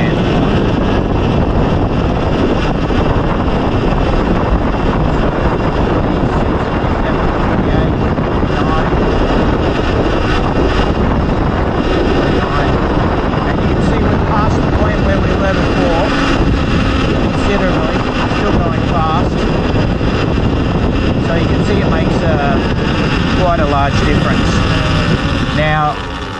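Steady loud wind rush on the microphone and road noise from a Surron Ultra Bee electric dirt bike coasting downhill at speed, freewheeling with its regenerative braking set to zero.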